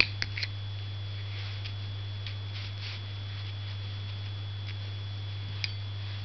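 Chinese ink brush working on paper: faint dry strokes and a few light clicks near the start and once near the end, over a steady low electrical hum and a thin high whine.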